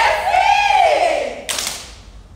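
A woman's voice calling out in a long drawn-out chant that rises and then falls in pitch, followed about a second and a half in by a single sharp hit, like a clap, that rings in the room.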